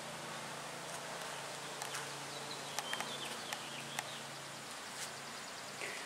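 Quiet outdoor background with a steady low hum, faint bird chirps around the middle, and a few light clicks.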